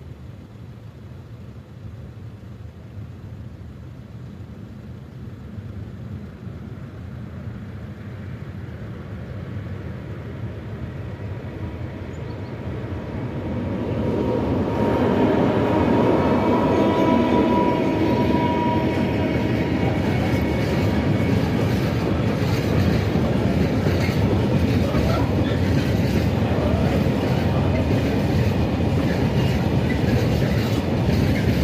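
Freight train approaching a level crossing, growing steadily louder until a pair of diesel locomotives passes about halfway through, with a held tone for a few seconds as they go by. Then loaded freight wagons roll past, their wheels clicking over the rail joints.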